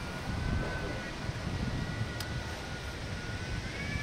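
Wind buffeting the microphone in uneven low gusts, with a faint thin steady whine in the background that steps up in pitch near the end, and a single sharp click about halfway through.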